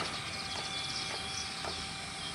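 Metal ladle stirring cooked broken rice in a metal pan, with a few light knocks against the pan over steady background noise.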